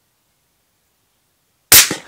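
A single shot from a Benelli Lupo bolt-action rifle in 6.5 Creedmoor fitted with a sound moderator, a sharp loud report near the end with a short fading tail.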